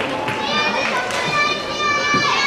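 Several high young voices shouting and calling at once, overlapping and echoing in a large sports hall.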